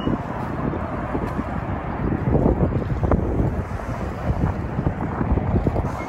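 Wind buffeting the microphone in uneven gusts, over the rush of the fast-flowing river.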